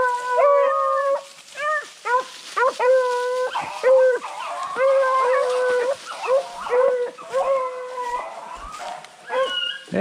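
Beagles baying on a rabbit's scent: a run of drawn-out, howling bawls, some held for up to a second, others short and choppy, repeating without a break.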